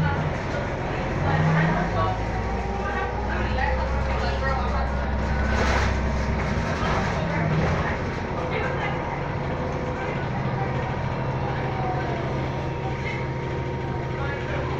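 Cabin sound of an Orion VII hybrid-electric transit bus riding in traffic: a steady low drone from the drivetrain with a thin, steady whine over it. Indistinct passenger voices sound in the background.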